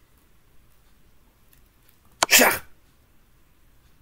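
A single sharp click about two seconds in, followed at once by a loud half-second burst of noise. The click fits the move sound of an online chess board as a bishop check is played.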